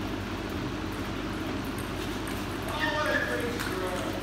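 Table tennis ball clicking off paddles and the table during a rally, a few sharp clicks spread out in time over a steady room hum. A voice sounds briefly in the background about three seconds in.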